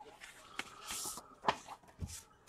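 Cardboard box being handled: a short sliding scrape of cardboard on cardboard about a second in, then a light knock.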